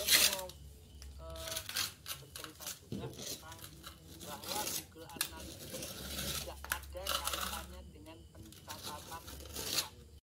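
Metal frying spatula scraping and spreading wet cement mortar into the gap along a door frame, in a series of short scrapes, used in place of a mason's trowel. Indistinct voices are heard between some of the scrapes.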